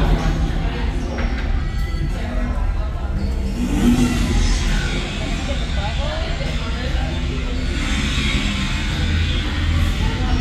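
Bar background: people talking over background music, with a steady low hum underneath.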